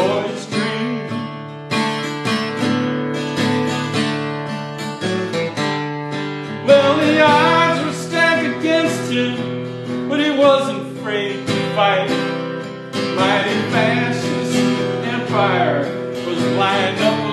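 A guitar strummed and picked in a country-style song, with a man singing over it in the middle and again near the end.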